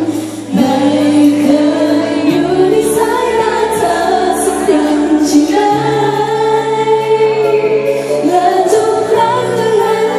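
Female vocalist singing a Thai pop song live into a handheld microphone, backed by a full band with sustained bass notes.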